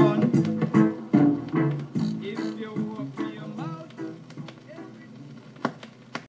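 A roots reggae record playing from a 7-inch vinyl single on a turntable, the music fading out as the song ends, with a sharp click near the end.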